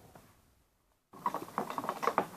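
Almost silent for about the first second, then a run of small clicks and scratchy rustling as rubber loom bands are stretched over the pegs of a plastic loom.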